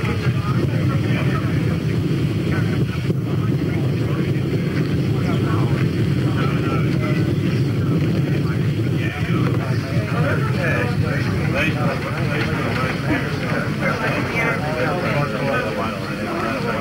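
A motorcycle engine running steadily with a low drone, under indistinct chatter from a group of people.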